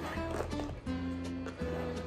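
Background music with steady held notes and a bass line that changes note every second or so.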